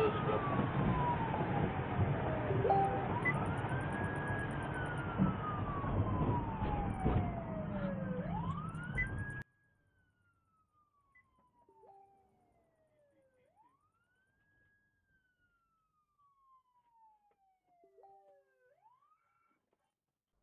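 Police siren on a slow wail, each cycle rising quickly and then falling slowly, over loud road and engine noise. The road noise cuts off abruptly about halfway through, leaving the siren very faint.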